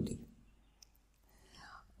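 A pause in speech: the end of a spoken word fades out at the start, then near silence, and a faint, brief voice sound is heard near the end.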